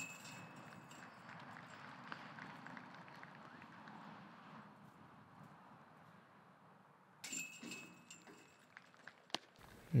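Chains of a disc golf basket hit by putts, rattling with a high metallic ring. It happens twice: right at the start, and again about seven seconds in, each time dying away over a second or so.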